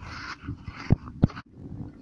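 Wind and road rumble on a bicycle-mounted camera, with a short breathy hiss at the start and two sharp knocks about a second in, as of the bike jolting over the road.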